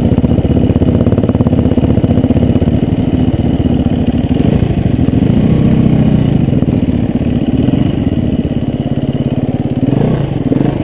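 Dirt bike engine running at low trail revs, heard close up from the rider's helmet, the engine note rising and falling with the throttle between about four and seven seconds in.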